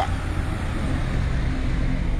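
A motor vehicle running nearby in street traffic: a steady low rumble and hiss with a faint engine hum.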